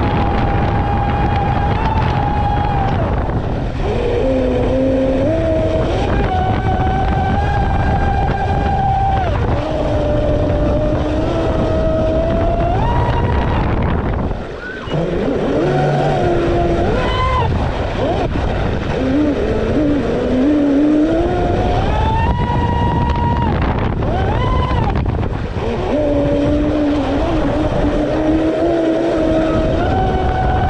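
Traxxas M41 radio-controlled speedboat's brushless electric motor whining from on board, its pitch stepping up and down with the throttle over a steady rush of water. About halfway through the sound drops for a moment as the throttle is cut, then the whine picks up again.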